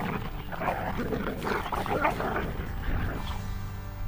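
Belgian Malinois dogs scuffling and growling in a brief confrontation, one dog rushing in to correct another.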